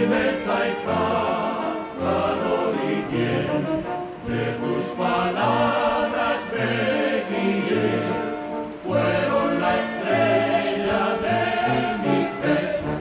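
Background music: a song sung by a choir, over a regular low bass line.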